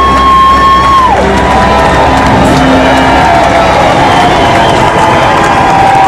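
A live country band's song ends: a high held note drops away about a second in and the low notes die out a few seconds later, while the crowd cheers and whoops.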